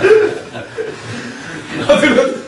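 A man chuckling in short bursts, loudest at the start and again near the end.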